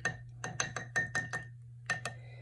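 Paintbrush clinking against the sides of a glass water jar as it is worked in the water: a quick run of about eight light taps with a ringing note, then one more near the end.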